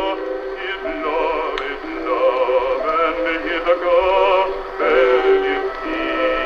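An Edison Diamond Disc phonograph playing a 1914 acoustic recording of singing with orchestral accompaniment.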